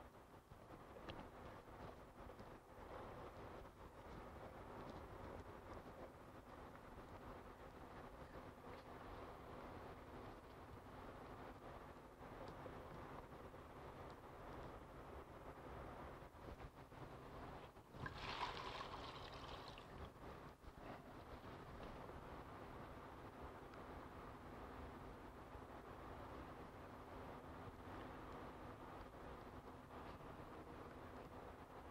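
Faint, soft wet rubbing of an alcohol-soaked sponge on a latex mask, over a low steady hum. A brief, louder hiss comes about 18 seconds in.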